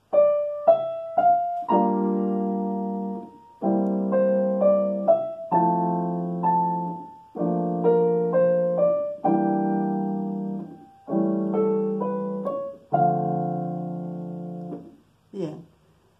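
Digital piano playing a slow jazz phrase: a melody line over sustained chords that change about every two seconds, fading out shortly before the end.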